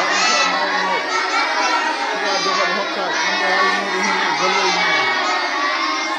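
A large group of children's voices chanting together in a loud, continuous chorus, as in a class reciting a lesson aloud.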